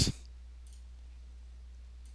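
Quiet room tone with a low steady hum, and two faint computer-mouse clicks, one under a second in and one near the end.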